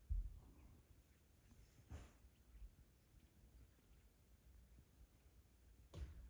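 Near silence: faint outdoor room tone with a couple of soft low bumps, one at the start and one about two seconds in.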